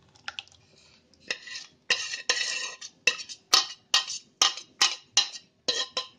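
Metal spoon scraping and knocking against a metal pot as cooked guava pulp is emptied into a cloth-lined strainer. It starts quietly, then from about a second in comes a run of sharp scrapes and clinks at about two a second.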